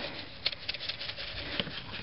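Wet cement mix being scooped with a small hand shovel and dropped into a plastic container: a scattering of short, soft knocks and patters.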